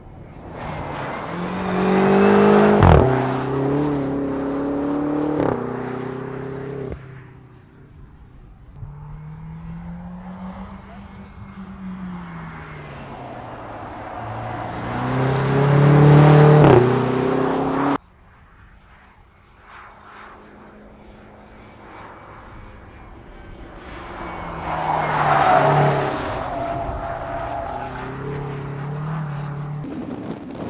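BMW X6 M's twin-turbo V8 accelerating hard around a track: the pitch climbs and drops back at upshifts in three loud surges, with the sound cutting off suddenly between shots.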